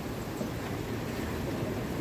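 Steady noise of a small tour boat at sea: the boat's motor running, mixed with wind and waves washing against the rocks.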